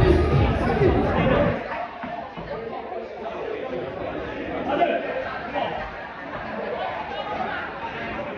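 Bass-heavy music stops about a second and a half in, leaving many people chattering in a large hall.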